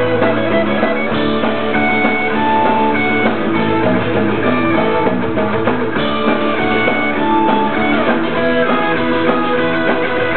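Pop-punk band playing live without vocals: electric guitars, bass and drum kit, with a lead guitar line of held high notes over the rhythm.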